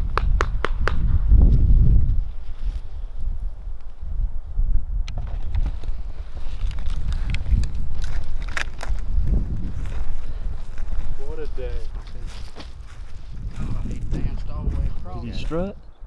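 Footsteps through dry grass and brush, with a low wind rumble on the microphone and a few clicks just at the start. Short, indistinct voice fragments come in about two-thirds of the way through and again near the end.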